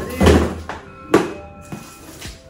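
Cardboard shipping boxes being handled and set down: two cardboard thuds with rustling, the second sharper one just over a second in, over soft background music.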